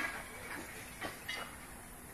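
Roof tiles clinking and knocking against each other as they are handled: three short, light clinks within the first second and a half.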